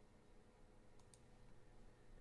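Near silence: faint room tone, with two faint clicks close together about a second in.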